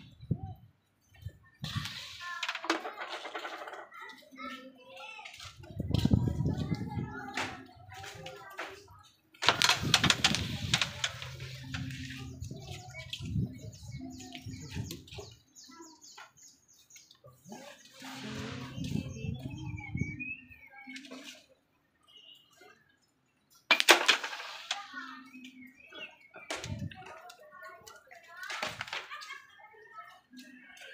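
People talking casually in the background, broken by a few sharp clicks of cue and balls striking during pool shots on a homemade table.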